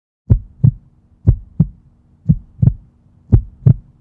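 Heartbeat sound effect: four deep double thumps, about one a second, over a faint steady low hum.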